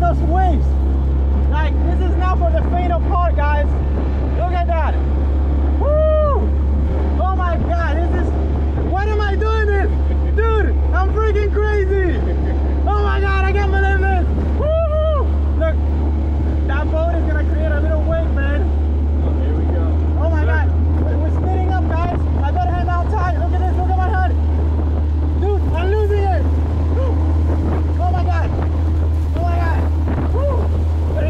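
Small outboard motor driving a Polycraft 300 Tuffy plastic boat at speed through choppy water: a steady low drone throughout, with indistinct voices calling out over it.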